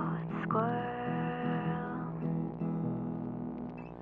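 Blue Lava Touch smart guitar playing the closing chords of a short folk-pop song, with a chord struck about half a second in that rings out.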